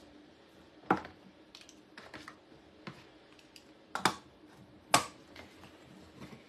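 Hand-held crank can opener clicking against a metal can as it is clamped on and turned: sharp clicks about one, four and five seconds in, with fainter ticks between.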